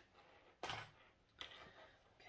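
Near silence broken by two short handling noises from scissors and fabric being moved: a louder one about half a second in and a fainter one about a second later.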